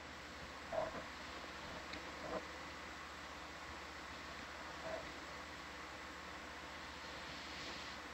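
Steady low hiss and hum of room and equipment noise on the ROV control room's audio feed, with a few faint brief blips.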